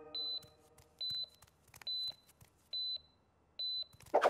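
Heart-rate monitor sound effect: five short high beeps at one pitch, evenly spaced a little under a second apart, the steady pulse of a patient on the operating table. The tail of background music fades out at the start.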